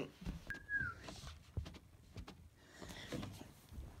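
Handling noise as a phone camera is repositioned: scattered light knocks and rustles, with one brief high squeak falling in pitch about half a second in.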